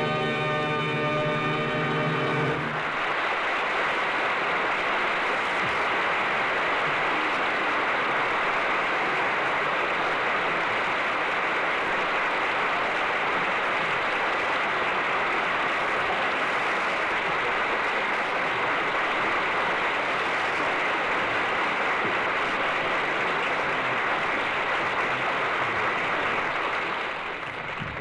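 The orchestra's final chord is held for about the first two and a half seconds, then an audience applauds steadily for over twenty seconds, fading away near the end. Everything sounds thin and dull, cut off above the upper mid-range, as on a 1940s radio transcription recording.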